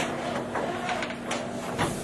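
Rustling and scattered clicks, like handling noise, over a steady low hum.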